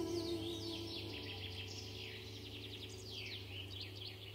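Small songbirds chirping and twittering in a pine forest, a busy run of quick high, downward-sweeping chirps. The last held notes of the bandura song fade away in the first second.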